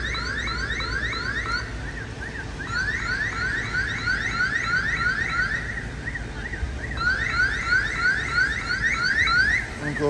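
Electronic alarm sounding: a quick, repeating run of rising chirps, several a second, in three stretches with short breaks between them.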